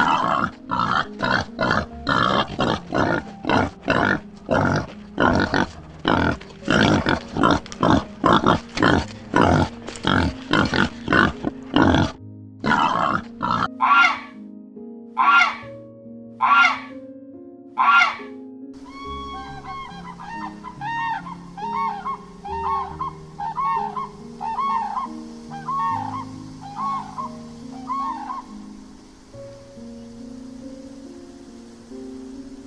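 Warthogs grunting in quick runs, about two grunts a second, for the first twelve seconds or so. After that come a few separate sharp calls, then a run of short repeated calls from a Canada goose, all over soft background music.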